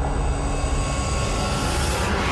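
Logo-intro sound effect: a steady deep rumble with a hissing, jet-like whoosh that swells near the end.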